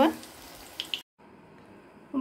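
Batter-coated potato chops deep-frying in oil in a kadai, a steady soft sizzle that cuts off suddenly about a second in, leaving only faint room noise.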